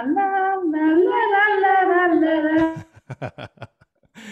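A woman singing a national anthem unaccompanied over a video call, holding long, gliding notes. The singing stops about three seconds in, and a few short clicks follow.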